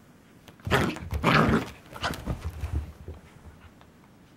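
A puppy and a bigger long-haired dog playing, with a burst of loud barks and growls starting under a second in and dying away by about three seconds.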